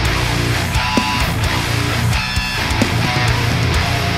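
Seven-string electric guitar tuned to drop A playing a heavy, distorted metal riff through an amp-simulator plugin and cabinet impulse responses. It sits in a full, loud mix with regular sharp hits and higher pitched notes recurring about once a second.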